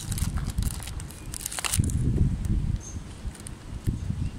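Wind buffeting the microphone in gusts, the strongest a couple of seconds in. Thin plastic packaging crinkles under the hands in the first couple of seconds.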